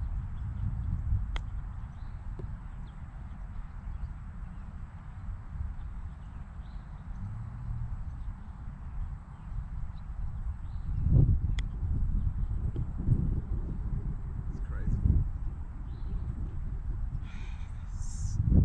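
Wind buffeting the microphone: a low rumble that swells in gusts about eleven and fifteen seconds in. Two sharp clicks, about a second in and again ten seconds later, from a golf club striking the ball.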